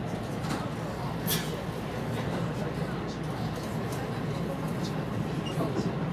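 Electric commuter train running, heard from inside the driver's cab: a steady low rumble with a few sharp clicks and rattles.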